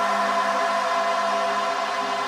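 Electronic music breakdown: a sustained synth pad chord over a hiss-like wash, with no drums or bass line.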